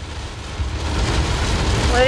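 Heavy rain drumming on a car's windshield and roof, heard from inside the moving car over a low road rumble; the rain noise swells louder about halfway through.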